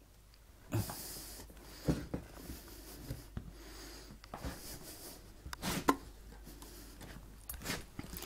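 Faint handling noises: a brief rustle about a second in and a few soft knocks spread through, as the bread, plate and table knife are handled while margarine goes onto the slices.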